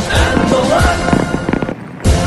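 Aerial fireworks going off in a quick string of sharp bangs and crackles, mixed with music. The sound drops away briefly near the end.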